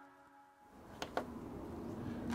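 Near silence, then faint room tone with two soft clicks about a second in.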